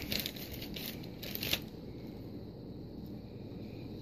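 Plastic packaging crinkling briefly as a package of nail-art plates is opened, once at the start and again about a second and a half in.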